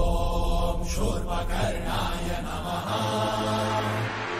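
Devotional mantra chanting set against music, with long held pitched notes over a steady low drone.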